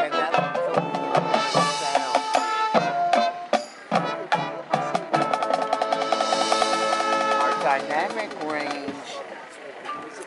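Marching band playing: short accented brass chords punctuated by drum hits, then a long held chord about five seconds in that fades away near the end.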